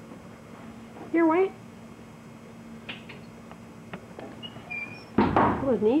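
A short, high vocal sound rising in pitch about a second in, over a faint steady hum, with a few faint taps later on.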